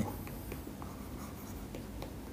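Faint scratching of a stylus writing a word on a pen tablet, over a low steady hiss.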